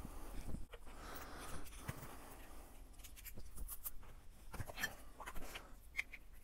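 Faint handling noises of small motorcycle parts and their packaging being picked up by hand: a soft rustle and scattered light clicks.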